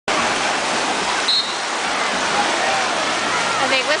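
Wave-pool surf breaking and churning, a steady rushing of water, with one short whistle blast about a third of the way in, a signal for the swimmers to get out.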